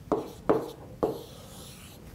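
Stylus writing on a tablet screen: three short scratchy strokes about half a second apart.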